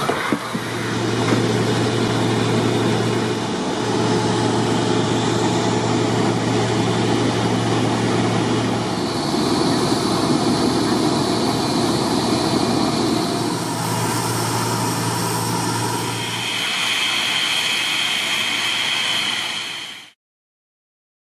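Steam hissing steadily as it vents from sewer-lining cure equipment at a manhole, over the low steady hum of running machinery that drops out for a few seconds midway and returns briefly. A higher steady tone joins near the end, and everything cuts off suddenly.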